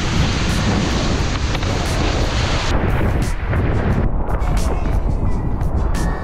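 Steady rush of wind on the microphone and water spray from a wakeboard riding across the water, with background music underneath. The high hiss thins out about halfway through.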